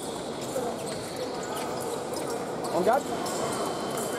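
Busy sports-hall ambience: background voices and fencers' footwork on the metal pistes, with a quick rising shoe squeak about three quarters of the way through.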